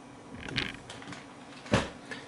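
Handling noise: a brief soft rustle about half a second in, then a single sharp knock near the end, the loudest sound.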